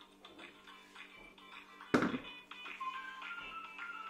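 Background music with a light melody. About two seconds in comes a single sharp knock: a kitchen utensil striking the plastic mixing bowl of whipped cream.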